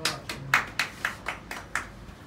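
Hand clapping by a spectator: about eight quick, sharp claps, roughly four a second.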